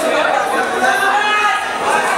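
Spectators around a fight ring chattering and calling out over one another, a steady jumble of many voices with no single clear speaker.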